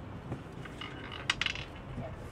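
Light clinks of small hard tableware objects, a quick cluster of sharp clinks about a second and a half in.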